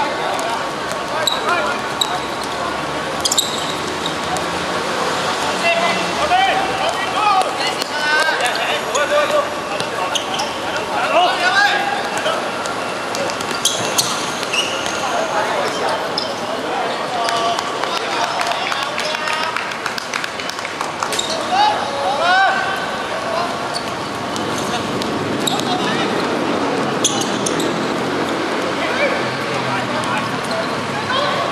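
Players calling out to each other during a five-a-side football game, with the thud of the ball being kicked and bouncing on the hard court every so often.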